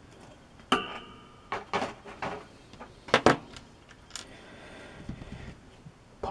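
Plastic model kit parts and small tools being handled on a work surface: a handful of sharp clicks and taps, the first followed by a brief ringing.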